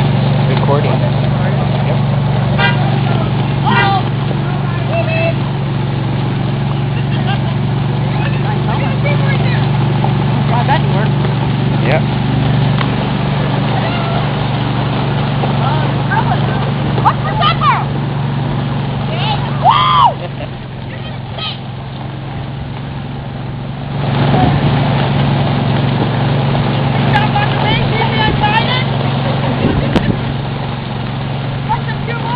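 Homemade golf cart train running along a gravel road: a steady low drone with the rumble of wheels on gravel. The drone eases off for a few seconds about two-thirds of the way through, then picks up again. Scattered voices of riders, with one loud call about twenty seconds in.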